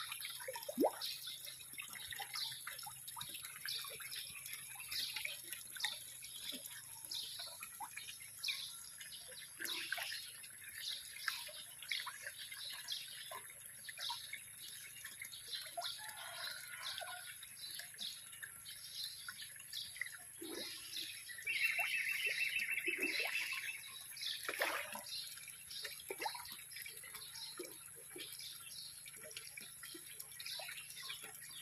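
Many small splashes and pops at the water surface, several a second and irregular, as a crowd of fish feeding at the top of a concrete pond break the water, over a faint trickle of water. A brief buzz sounds for about two seconds late on.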